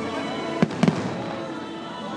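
Aerial fireworks shells bursting: three sharp bangs in quick succession a little over half a second in, heard over steady music.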